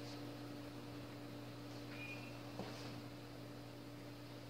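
Quiet background with a faint steady low hum and light hiss, and no distinct sound events.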